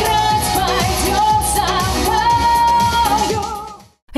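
Female pop singer singing into a handheld microphone over an amplified dance-pop backing track with a steady kick-drum beat about twice a second, holding one long note midway. The music fades out near the end.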